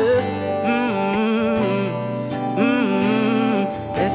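Live pop song: a hummed 'mm, mm-mm' vocal line sung twice over stage piano and band accompaniment.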